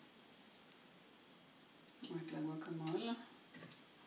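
A spoon scraping and clicking faintly against the plastic bowl of a small food processor as guacamole is scooped out, with a woman's voice for about a second in the middle, held on an even pitch.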